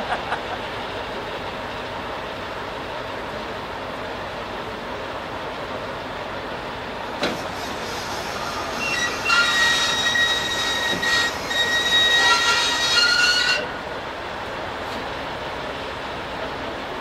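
A loud, high-pitched metallic squeal holding several steady pitches at once, beginning about nine seconds in after a single click and cutting off suddenly some four seconds later, over steady background noise.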